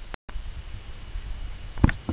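Low, steady room noise, broken by a brief dead-silent gap just after the start where the recording is cut, with one sharp knock near the end.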